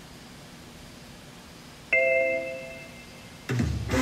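A single bell-like ding rings out about halfway through and fades over about a second, over faint hall noise. Music for the routine starts loudly just before the end.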